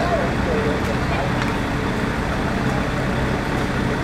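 Police water cannon truck's engine running with a steady, even hum, with crowd voices briefly at the start.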